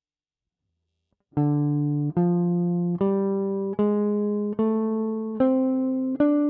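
Gibson ES-137 Custom semi-hollow electric guitar, played clean, picking the D minor blues scale upward one note at a time in fifth position. Starting about a second in, six evenly spaced notes (D, F, G, A♭, A, C) ring out roughly one every 0.8 seconds.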